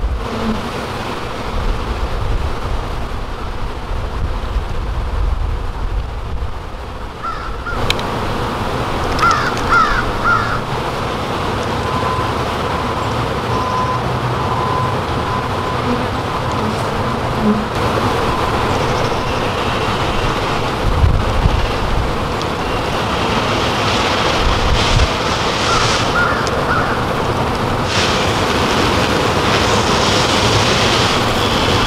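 Honey bees buzzing around an open hive box as bee-covered frames are handled, over a steady outdoor rumble. A few short bird calls come about nine seconds in and again near the end.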